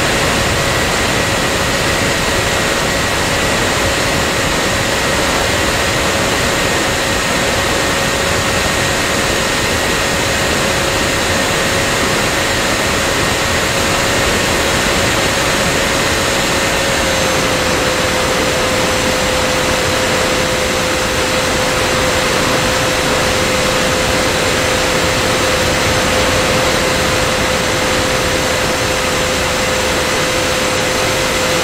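Radio-controlled model airplane in flight, heard from a camera mounted on the airframe: steady rushing wind noise over the microphone with a steady motor-and-propeller tone, which steps down slightly in pitch a little past halfway.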